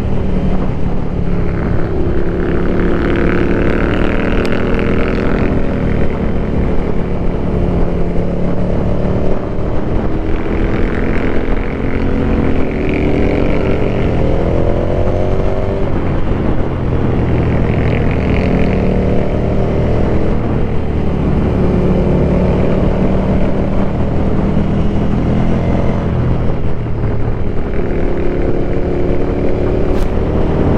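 Ducati Scrambler's air-cooled L-twin engine under way, its pitch rising and falling with throttle and gear changes. About halfway through it climbs steadily for several seconds, then drops suddenly.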